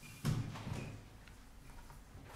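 A sudden low thump about a quarter second in, followed by a softer knock or rustle, then faint room noise.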